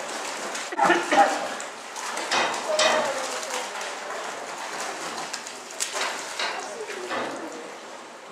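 Water splashing and dripping as a dip net holding kokanee salmon is worked in and lifted out of a raceway, with fish thrashing in the net.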